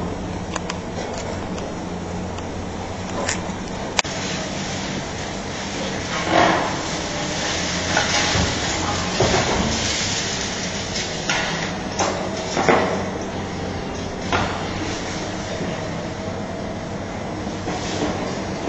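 Demolition excavator's diesel engine running steadily, with irregular crunching and scraping as concrete and masonry break off the building and fall, heaviest from about six to fifteen seconds in. A single sharp crack about four seconds in.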